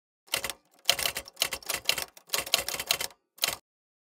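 Typewriter keys striking in quick bursts of clicks, with several runs over about three seconds. They stop shortly before the end.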